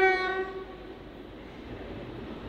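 Short single-note horn blast from a Class 66 diesel freight locomotive, lasting about half a second, followed by the low, steady running of the approaching freight train.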